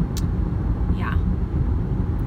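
Steady low road rumble inside a moving car's cabin, tyres and engine while driving. A short click comes just after the start, and a brief spoken "yeah" comes about a second in.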